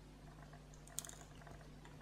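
Near silence with one faint, sharp tick about a second in, from small stone chips being handled.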